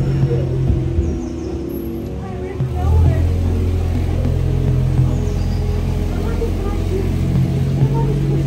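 Jeep engine pulling the tram, a steady low drone that drops in pitch and gets louder about three seconds in.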